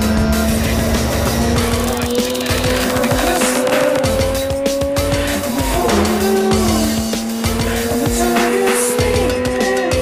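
Mazda RX-8's twin-rotor rotary engine running hard at speed, its pitch climbing slowly, dipping about five and a half seconds in and climbing again, with music playing over it.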